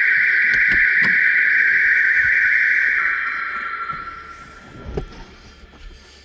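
The aftermarket alarm fitted to a 1974 Vauxhall Magnum 1800 is sounding a loud, steady, high-pitched tone. About three seconds in it drops slightly in pitch and dies away. A few knocks are heard early, and a thump comes about five seconds in.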